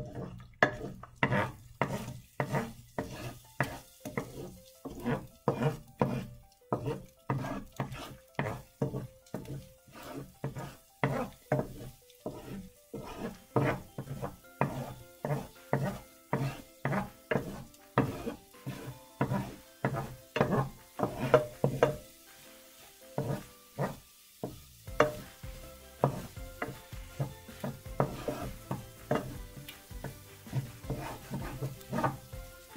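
Wooden spoon stirring and scraping egg as it scrambles in a skillet, about two strokes a second, with the egg sizzling in the hot oil. The stirring stops for about three seconds a little over two-thirds of the way through, then resumes.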